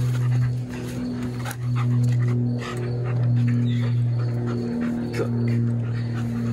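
Background music with a steady bass line, over the sounds of a young German Shepherd dog during excited play.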